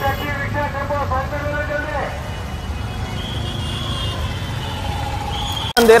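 Busy road traffic: a steady low rumble of engines from slow-moving cars, taxis and scooters, with voices of people nearby. It cuts off abruptly near the end.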